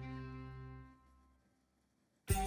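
Background music of sustained, steady instrumental tones, fading out about a second in to near silence.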